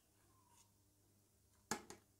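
Near-quiet skimming, then two quick sharp taps near the end as a stainless slotted spoon knocks against a clear plastic container while cream is scraped off it from soured milk.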